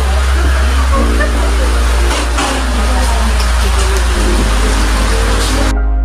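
Background music with steady held notes and a constant deep bass, over a hiss of outdoor ambient noise with people's voices; the ambient noise cuts off suddenly near the end, leaving only the music.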